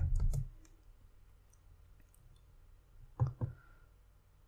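A few faint computer clicks from a mouse and keyboard while a formula is edited and entered. A brief vocal sound comes about three seconds in.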